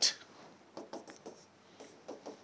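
Short pen strokes tapping and scratching on the surface of an interactive display board as a row of dashed lines is drawn, one dash after another.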